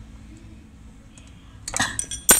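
A metal open-end spanner clinking against the generator's bolts and metal housing: a short cluster of sharp clicks with a brief ring near the end, over a faint low background.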